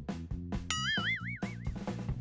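Background music with a steady beat, and a cartoon boing sound effect that starts about two-thirds of a second in and wobbles up and down in pitch for about a second.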